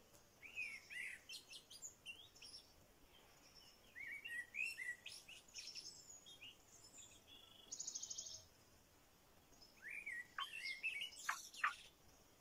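Songbirds chirping and calling in several short bouts of high, sweeping notes, with a rapid buzzy trill about eight seconds in.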